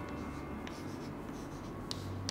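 Chalk writing on a chalkboard: soft scratching strokes with a couple of sharp taps of the chalk against the board, the clearest one near the end.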